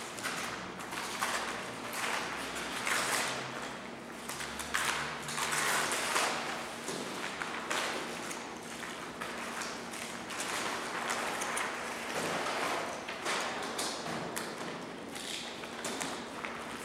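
Sheets of paper rustling as documents are handled and pages turned, with light taps and knocks on tabletops. A faint steady hum runs underneath.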